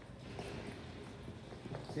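Faint, irregular footsteps and light taps on a concrete kennel floor.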